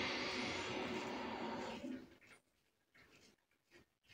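Aluminium double-edge safety razor with a Wilkinson Sword blade scraping through lathered stubble on the neck. One long stroke dies away about two seconds in, followed by a couple of short strokes near the end.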